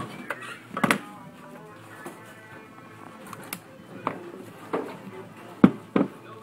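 A woven willow basket being handled and turned over on a workbench, knocking against it a few times with sharp knocks, the loudest near the end. Music plays faintly in the background.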